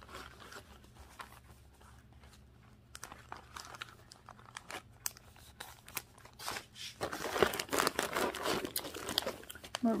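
Clear plastic zip-top bags of seed packets crinkling and rustling as they are handled and sorted, with scattered small clicks, busier and louder from about seven seconds in.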